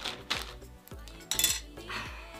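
A spoon knocking and clinking against a plate and bowl while masa is scooped and the utensils are set down: a few sharp knocks, the loudest clatter a little over a second in.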